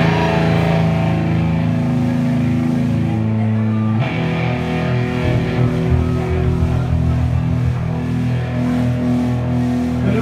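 Live rock band playing loud electric guitar, bass and drums through club amplification, with held, ringing chords. The sound grows fuller and brighter about four seconds in.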